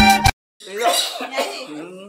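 Upbeat intro music cuts off abruptly, and after a brief silence a man coughs.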